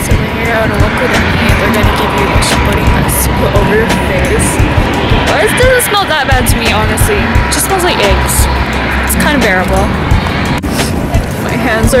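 Wind rumbling and buffeting on the camera microphone, in uneven gusts, with voices and background music underneath.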